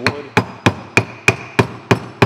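A block of wood knocking on the top end of an axe handle, driving the handle down into the eye of the axe head. Evenly spaced taps, about three a second, each with a brief high ring.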